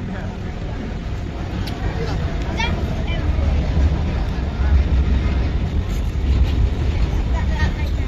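Busy city street ambience: a steady low rumble of road traffic, with scattered voices of passers-by.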